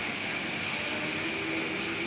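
Steady background noise with a faint hum, unchanging throughout.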